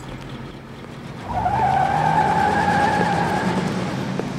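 Car tyres squealing in a skid: one steady high screech that starts about a second in and lasts a little over two seconds, over the low noise of the car.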